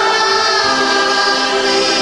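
Choir singing a sung part of the Mass, several voices holding long, steady notes.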